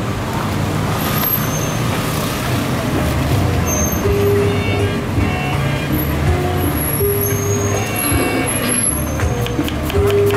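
Street traffic: a steady, loud low rumble of vehicle engines, with short steady tones scattered through.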